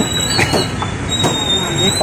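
Tea stall and street clatter: sharp clinks of vessels over a steady noise, with a thin high whine running through.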